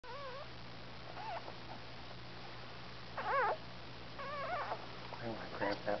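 Scottish Terrier whimpering during whelping: four short, high-pitched, wavering cries, the loudest about three seconds in. A voice starts near the end.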